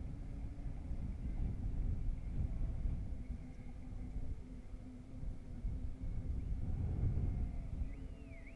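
Wind buffeting the microphone of a camera riding along on a moving bicycle: a steady, fluttering low rumble.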